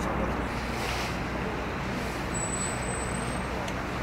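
Steady low rumble and hiss of outdoor harbour background noise, like engines or machinery running. A thin high tone sounds for about a second just past the middle.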